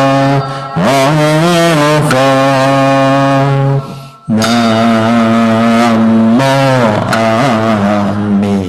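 Slow, melodic Buddhist chanting of nianfo (Buddha-name recitation): long held vocal notes that bend up and down in pitch. There is a short break about four seconds in before the next long phrase.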